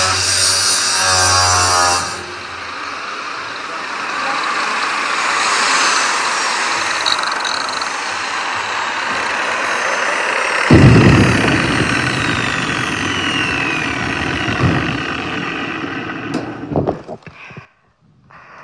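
Corded angle grinder running and grinding metal, a pitched motor whine at first, then a rough grinding noise with faint falling tones. About eleven seconds in, a sudden louder, harsher noise with a deep rumble takes over, electric stick (arc) welding, and fades out near the end.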